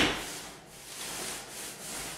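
Paint roller rolling wet paint onto a wall in repeated strokes, a rhythmic rubbing swish, beginning with a sharper stroke.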